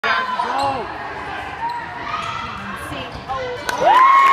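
Basketball game in a gymnasium: a ball bouncing on the hardwood court with voices around it, then a loud 'woo!' cheer near the end.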